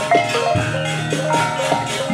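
Javanese gamelan accompanying a wayang kulit shadow play: struck bronze metallophones ring out in a running pattern of notes. Sharp percussive knocks cut in, the loudest just after the start.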